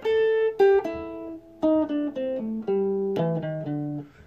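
Sunburst Stratocaster-style electric guitar playing the third pattern of the A minor blues scale, blue note included, one plucked note at a time. The run steps down in pitch from the higher strings to the low strings, about a dozen notes in four seconds.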